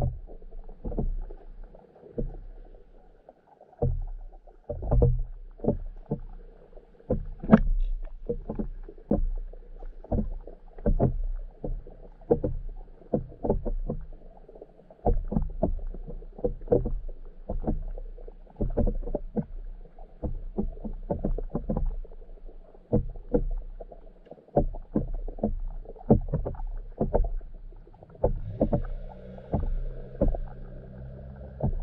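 Underwater sound picked up by a camera in its waterproof housing on the lake bed: irregular muffled knocks, about one or two a second, over a low rumble of moving water.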